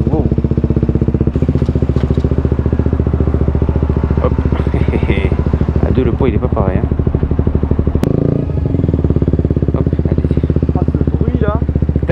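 A KTM 125 Duke's single-cylinder four-stroke engine runs loud through an aftermarket Akrapovič exhaust while the bike is ridden through traffic, with a steady, fast pulse.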